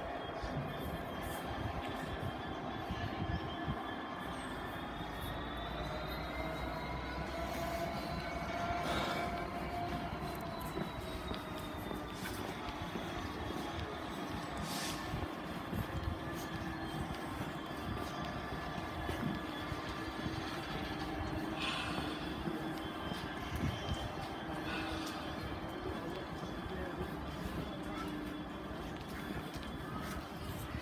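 Trains standing at the station with their engines running: a steady hum with several held tones that drift slightly in pitch, and a few short knocks.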